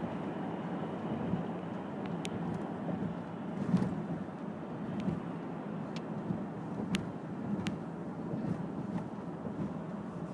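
Steady road noise inside a moving car's cabin: engine and tyre rumble at highway speed, with a few faint sharp clicks now and then.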